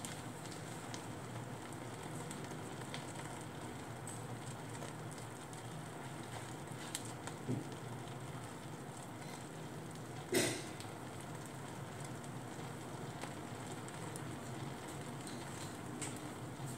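Food frying in a pan, a steady soft sizzle with scattered small pops and crackles. There is one louder pop about ten seconds in.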